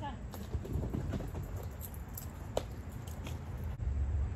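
Quick, irregular patter of a dog's paws running over grass, with a short squeak a little past halfway.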